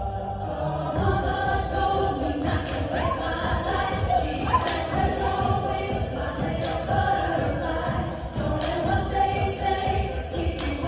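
Mixed-voice a cappella group singing a pop arrangement in close harmony, with a vocal percussion beat joining in about a second in.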